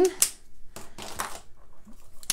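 A sharp click, then soft rustling and a few light taps, like hands handling things on a tabletop.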